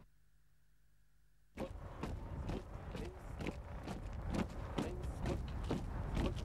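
Near silence, then about a second and a half in, a sudden start of marching boots: about two footsteps a second over the steady noise of a crowd outdoors.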